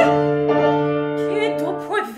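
Piano accompaniment in an operatic aria, holding a chord that slowly fades while the soprano rests, then a few rising notes near the end leading back into her next phrase.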